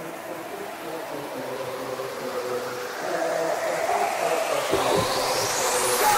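Psytrance track in a build-up with the kick drum dropped out. A rising noise sweep climbs in pitch and grows steadily louder over held synth layers, with two short low hits near the end, leading into the drop.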